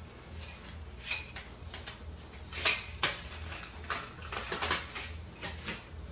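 Crossbow bolts being pushed into a pistol crossbow's seven-round magazine: a series of sharp clicks and clacks, the loudest about two and a half seconds in.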